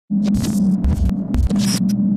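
Electronic glitch sound effect: a steady buzzing hum broken by irregular bursts of crackling static, with a few low thuds around the middle.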